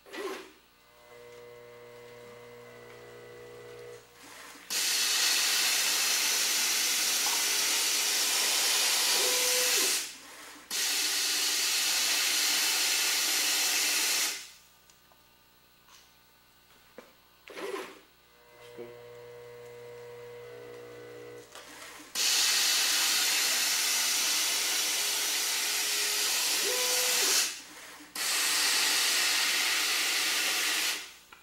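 Gravimetric rotary feeder pouring granular powder into a plastic cup, a loud steady hiss in two long stretches with a short break between, filling the cup to a set 100 grams. This happens twice. Between fills a click and a quieter motor hum mark the conveyor moving the next cup into place.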